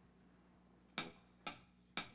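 Drummer's count-in: after about a second of near silence, faint sharp clicks about half a second apart, three in all, leading into the band's song.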